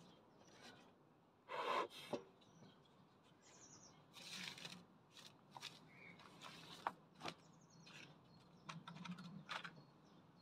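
Bee smoker's bellows being pumped: several short puffs of air, the strongest about a second and a half in, with small clicks from the smoker. Birds chirp faintly in the background.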